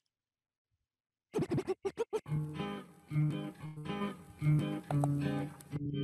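A DJ cuts music in on turntable-style platters and a mixer: silence for just over a second, then a quick run of chopped, stuttering bursts, then the track plays on with a plucked melody.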